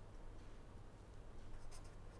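Pen scratching on paper while writing, faint and in short strokes that pick up about a second and a half in, over a steady low hum.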